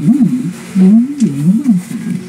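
A person's voice swooping quickly up and down in pitch, with a steadier held note near the end.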